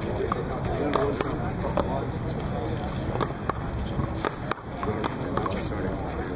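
Scattered, irregular sharp taps and clicks on an outdoor concrete paddleball court, over low voices and a steady outdoor background hum.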